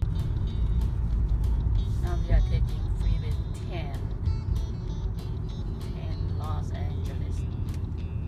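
Steady low road and engine rumble inside a moving car's cabin, with faint voices about two seconds in and again near six seconds.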